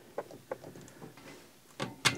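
A few faint clicks and knocks from the 711L air chuck and its rubber hose being handled on a bike tyre's Schrader valve, with no hiss of escaping air.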